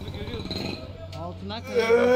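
Indistinct voices over a steady low hum, with a louder, held voice starting near the end.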